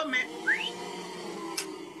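A man's voice holding one long, steady-pitched drawn-out sound on a trailing-off "me...", with a short rising whistle-like squeak about half a second in.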